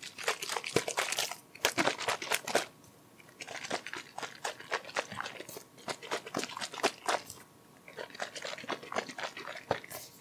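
Clear plastic bottle crinkled and tapped by hand close to the microphone, in three runs of crackling clicks with short pauses between them.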